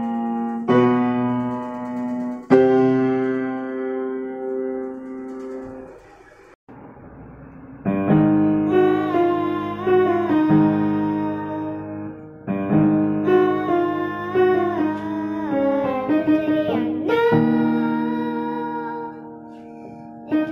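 Upright piano playing slow, held chords. The sound drops out briefly about six seconds in, then the piano resumes with a wordless sung "ah" line over it.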